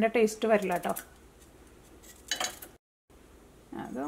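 Speech for about a second, then one short clatter of beetroot pieces dropped into a stainless steel saucepan a little after two seconds in, followed by a brief total dropout before the talking resumes.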